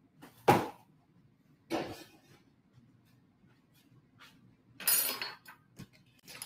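Kitchen handling sounds: a sharp knock about half a second in, a softer knock near two seconds, then a brief rustling scrape about five seconds in and a small click just after.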